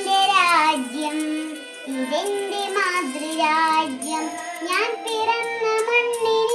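A young girl singing a patriotic song solo, holding notes and sliding between them.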